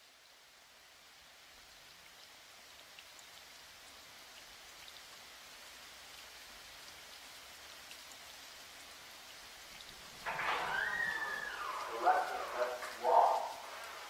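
Steady rain slowly fading in, with faint pattering ticks. About ten seconds in, louder voices come in over the rain.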